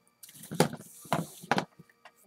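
Cardboard baseball cards sliding against each other as the front card is slipped off a hand-held stack, a soft rustle with three light clicks.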